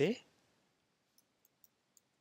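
Faint typing on a computer keyboard: a few light keystroke clicks in quick succession in the second half.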